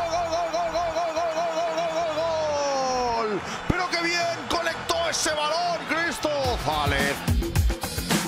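A football commentator's long, drawn-out "gooool" cry, held on one wavering pitch for about three seconds before it falls away, followed by shorter excited shouts. Background music with a steady beat comes up in the last second or so.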